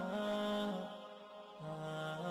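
Slow melodic outro music with long held notes that step from one pitch to the next, going quieter for a moment about a second in before picking up again.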